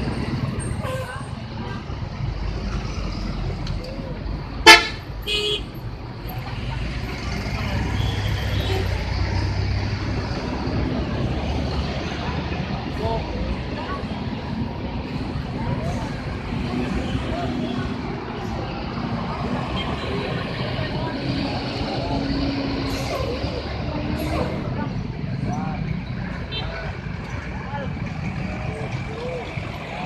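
Large bus engines running and pulling past in street traffic, a steady low rumble. A very loud, sharp short blast comes about five seconds in, with a smaller one just after. Voices sound faintly in the background.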